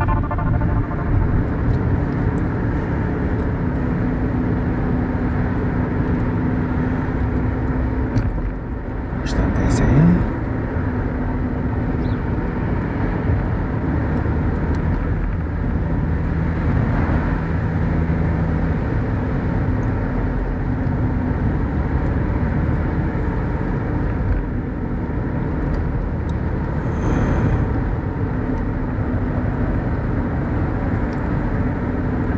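Mercedes-Benz W124 driving at town speed: a steady rumble of engine and road noise, with a brief swell and a short rising tone about ten seconds in.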